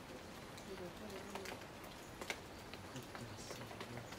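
Faint, distant voices of people talking, with scattered light ticks and one sharper click a little past the middle.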